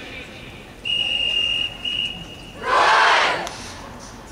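Two blasts on a drum major's whistle, a steady high tone, then the marching band shouting one loud call in unison about three seconds in.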